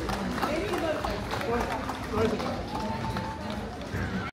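Live folk music outdoors, voices with accordion and drum, mixed with the chatter of a crowd of dancers; one voice holds a long note near the end.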